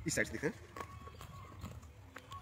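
The perforated tear-off edge of a paper PIN mailer being torn away by hand: a few faint ticks and soft rips.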